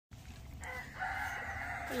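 A rooster crowing: one long call of over a second, starting about half a second in.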